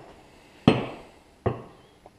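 A steel tube knocked down twice onto the workbench as it is laid in place for an A-arm; each knock rings briefly, and the first is louder.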